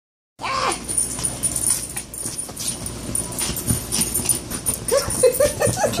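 Small dog digging frantically at a bed's comforter: rapid, irregular scratching and rustling of claws on fabric. A short high whine comes just after the start, and a run of quick whines comes in the last second.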